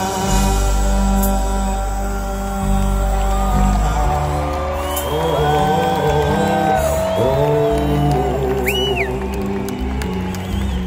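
A rock band playing live through a concert sound system: an instrumental passage in which a lead melody line holds notes, slides up and wavers in pitch over steady bass and drums. A short high whistle sounds near the end.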